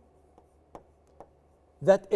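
A stylus writing on an interactive touchscreen display: a low background with three faint sharp taps of the pen on the screen. A man's voice starts again near the end.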